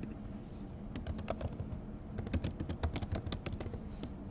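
Computer keyboard typing: a run of quick key clicks starting about a second in, with a short pause before a denser run in the second half.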